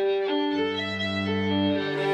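String quartet of violins, viola and cello starting to play slow, held notes. A low cello line comes in underneath about half a second in.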